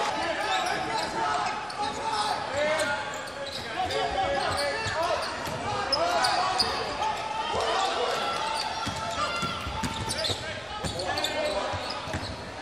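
Court sound of a basketball game: a ball dribbling and bouncing on the hardwood floor, with players' voices calling out across a large, echoing hall.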